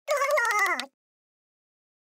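A cartoon character's wordless voice: one high, wavering cry that falls in pitch, lasting under a second.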